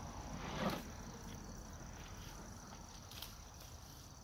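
A steady high-pitched chorus of crickets, with a brief louder sound about half a second in.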